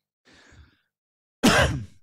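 A man's single short cough, close to the microphone, about one and a half seconds in, after a faint intake of breath.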